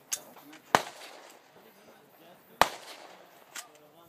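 Two sharp rifle shots, about two seconds apart, fired elsewhere on the range.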